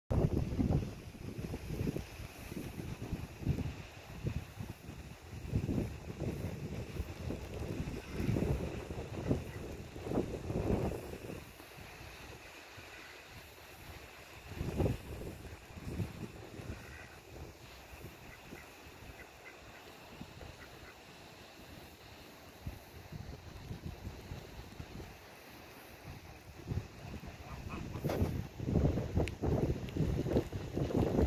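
Wind buffeting the microphone in uneven rumbling gusts, heaviest at the start, around ten seconds in and near the end, with a few faint duck calls in the calmer middle stretch.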